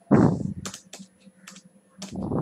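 Computer keyboard keys being typed: about four sharp, separate keystrokes as a word is typed. They follow a short, loud, deeper burst of sound right at the start.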